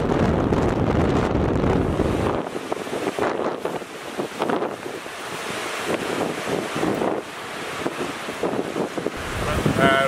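Strong wind buffeting the microphone over a whitecapped lake with waves breaking at the shore; about two and a half seconds in, the roar drops abruptly to a quieter, uneven gusting.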